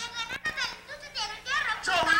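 A young boy's high voice rapping quickly into a stage microphone, amplified through the PA.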